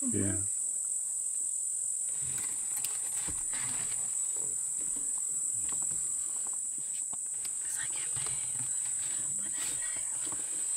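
Insects droning: a steady, high-pitched, unbroken hum.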